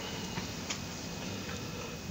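Quiet room tone with a few faint, sharp clicks as something is handled at a lectern.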